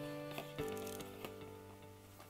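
Soft background music of held, sustained chords, changing about half a second in and fading toward the end. A few faint clicks come from a trading card being set into a clear plastic card stand.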